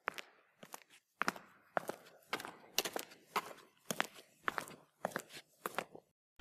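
Footsteps walking at an even pace, about two steps a second, each step a crisp scuff or click that often comes as a close double strike.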